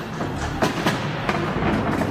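Hand pallet jack being pushed and pulled, its wheels rumbling with several irregular clunks and knocks.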